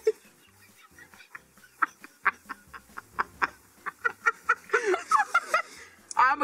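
Laughter held in behind a closed mouth while chewing: a run of short, irregular clucking bursts that comes faster toward the end, with a brief giggle.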